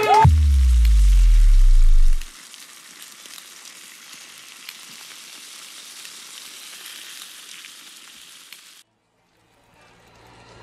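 Outro logo sound effects: a deep bass drop that falls in pitch for about two seconds, then a steady crackling hiss that cuts off suddenly near the end.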